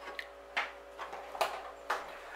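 Several light clicks and knocks from handling a milk bottle while a drizzle of milk is poured into a bowl holding a raw egg.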